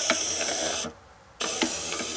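Code & Go Robot Mouse's small gear motors whirring as the toy drives itself forward across the grid, in two stretches with a short pause of about half a second between them.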